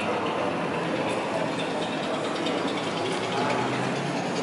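Steady background din of a large indoor exhibition hall, with no single distinct event.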